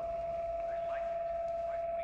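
A single steady high-pitched ringing tone, held without change, with a few faint, brief rising sounds behind it.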